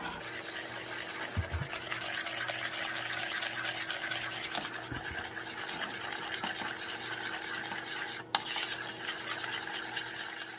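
Spoon stirring and scraping around the bottom of a metal saucepan of thickening milk-and-cornstarch champurrado, in quick continuous strokes, with a steady hum underneath.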